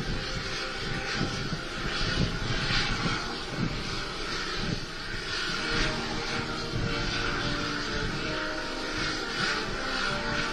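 A military band playing a national anthem, its held notes growing clearer from about halfway in, under a loud steady rushing noise with low gusts from the open-air tarmac.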